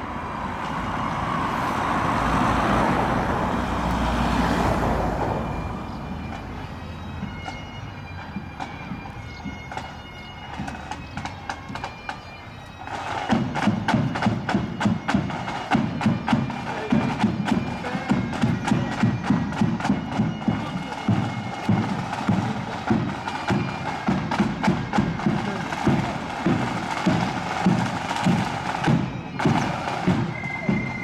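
A marching band strikes up about halfway through: side drums and a bass drum beating a quick march rhythm under a high-pitched melody. Before that, a rush of noise swells and fades over the first few seconds.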